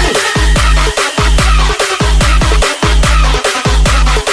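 Loud electronic dance music from a DJ's nonstop mix: a heavy, driving kick-drum beat with repeated synth sounds sliding down in pitch.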